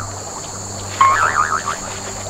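A short, high-pitched, rapidly warbling laugh about a second in, over a faint steady hum.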